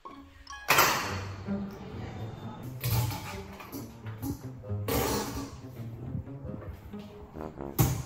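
Background music, with several sudden louder moments.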